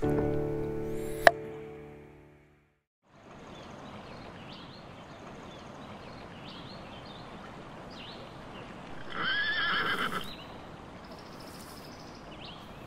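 A sustained music chord fades out, then, after a brief dropout, a horse whinnies once for about a second over outdoor background noise with short bird chirps.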